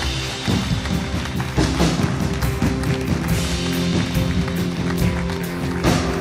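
Live church band playing soft music with sustained chords, with scattered taps and thumps over it.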